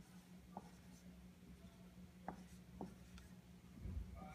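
Faint sound of a dry-erase marker writing digits on a whiteboard: a few short ticks as the tip strikes the board, about a second or more apart, over a steady low hum. A soft low thump comes near the end.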